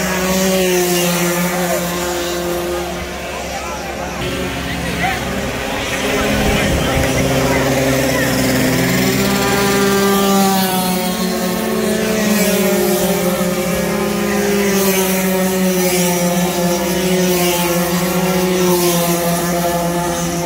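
48cc racing scooter engines running at high revs, with a rising whine as one comes through about eight to ten seconds in. Voices of people talking over the engines.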